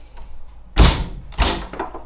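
Two heavy thuds on a wooden house door, about two-thirds of a second apart.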